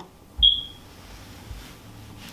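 A single short, high-pitched electronic beep about half a second in, dying away quickly, with a soft low bump at its start.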